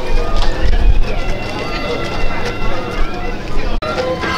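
People's voices calling and talking over music. A low rumble in the first second, and the sound breaks off abruptly just before the end.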